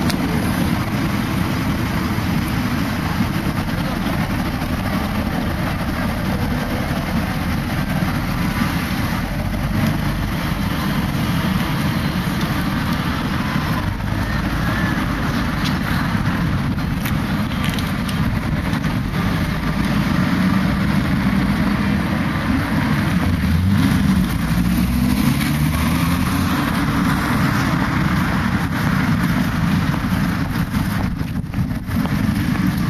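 Steady road traffic and vehicle engine noise with a heavy low rumble; about three-quarters of the way through, an engine's pitch climbs as it speeds up.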